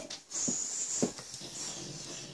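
Two pets play-fighting on a bed: breathy huffing and scuffling, with two short knocks about half a second apart.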